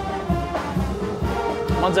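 Brass instruments playing music, with one long note held through the second half.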